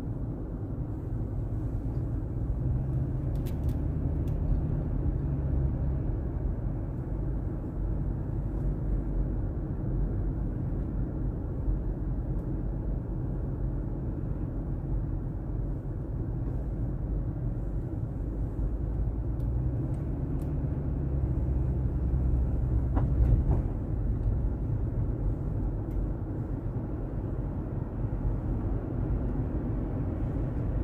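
Steady low road and engine rumble inside a moving car's cabin. It swells a little for a few seconds twice, near the start and about two-thirds of the way through.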